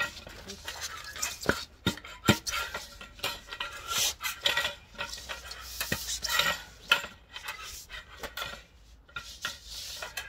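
A foam sleeve being forced down over a steel load bar, rubbing and scraping in uneven strokes, with several sharp metal clinks as the bar knocks against the metal tube it stands on. The foam is lubricated with WD-40 but still grips the bar.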